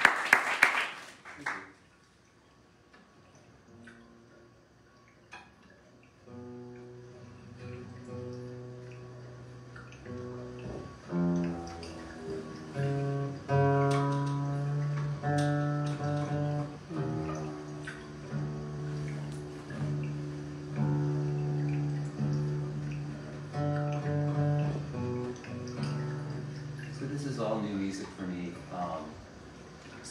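Applause dies away in the first second or two. After a short hush, a guitar plays slow, held notes and chords, each ringing for a few seconds.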